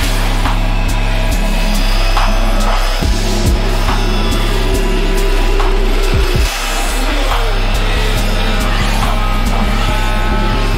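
Deep dubstep track mixed live on a DJ controller: steady heavy sub-bass under sharp drum hits. The bass briefly thins and the level dips about two-thirds of the way in, then the full bass returns.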